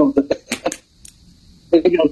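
A man speaking in short broken phrases, with a few brief sharp clicks in a pause in the middle.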